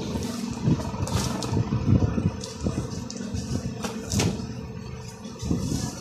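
Plastic packaging crinkling and cloth rustling as a packed unstitched suit is unwrapped and shaken open, with scattered sharp crackles over a low background rumble.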